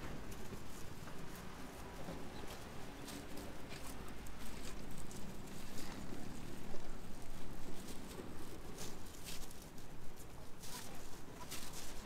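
Outdoor street ambience: a steady low city hum with many short irregular clicks and taps, such as footsteps on pavement, more frequent in the second half.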